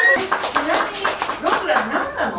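A small group clapping and talking at once, just as a held sung note breaks off at the start.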